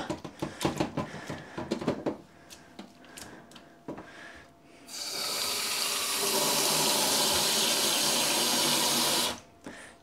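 Hands splashing and swishing water in a stainless steel tray in a sink. About halfway through, a kitchen mixer tap runs steadily into the tray, whipping up soapy suds, then is turned off suddenly near the end.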